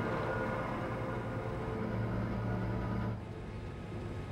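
Electric towing locomotive (a canal "mule") running along the lock, a steady low mechanical hum that grows louder for about a second midway and then eases off.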